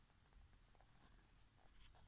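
Near silence: room tone with a few faint soft rustles, about a second in and again near the end.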